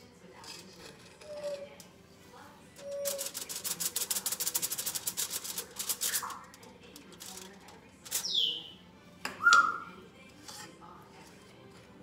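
A pet bird giving a few short chirps and whistles, one falling from high to lower pitch and the loudest call about nine and a half seconds in. Around the middle comes a rapid run of light ticking clicks lasting about three seconds.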